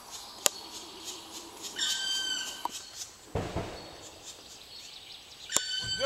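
A bird at a tree-hole nest gives two drawn-out calls, one about two seconds in and another near the end, over faint, rapidly repeated high chirps. A sharp click sounds about half a second in, and a low rumble comes a little past the middle.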